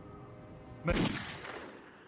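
A single revolver shot about a second in, followed by a long reverberant tail that fades away.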